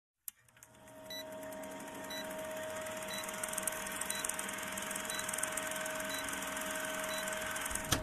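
Film-projector countdown sound effect: a steady mechanical whirr with a constant hum and a short tick about once a second, starting with a click.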